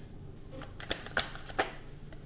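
Tarot cards being handled, a few sharp card flicks and snaps, three of them standing out through the second second.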